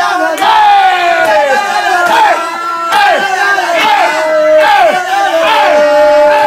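A group of voices singing and yelling together without instruments, loud, with long held notes and falling whoops.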